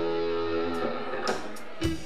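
Live blues-rock band with electric guitar: a chord is held and rings out, fading slowly, then the band strikes in again about a second and a half in.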